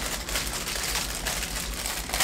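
Clear plastic bag crinkling as it is handled, a steady rustle of fine crackles.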